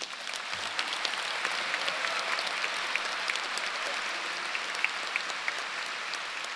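Audience applauding: many hands clapping together into a dense, even patter that builds over the first second and then holds steady.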